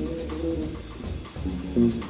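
Live small-group jazz: a guitar plays a single-note melodic line over upright bass and a drum kit keeping time on the cymbals.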